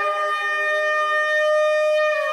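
A shofar (ram's horn) sounding one long, steady high note.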